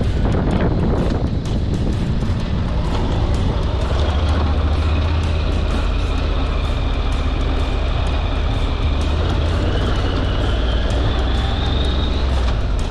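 Honda NC750X motorcycle's parallel-twin engine running steadily while riding, with a faint rise in pitch near the end; background music plays over it.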